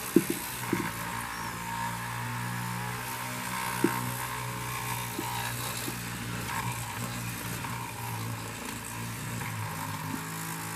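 A tethered micro toy helicopter's small electric motor and spinning rotor running steadily as it circles on its arm, with a few sharp clicks, the loudest just after the start and about four seconds in.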